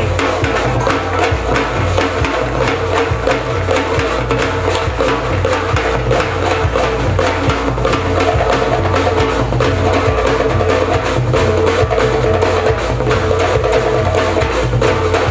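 Live samba-fusion band playing a percussion-driven groove: drum kit and hand drums with sharp, wood-block-like strikes, over a repeating low bass line.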